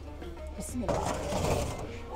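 Metal baking tray sliding into the oven of a wood-burning kitchen stove: a scraping, rattling burst about a second in that lasts under a second.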